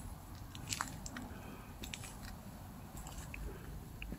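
A few faint, scattered small crunches and clicks over a low background rumble, with no steady rhythm.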